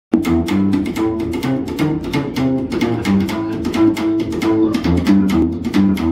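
Upright bass played slap style in a bluegrass tune: plucked bass notes with a sharp percussive click on each stroke, in a quick, steady rhythm that starts abruptly.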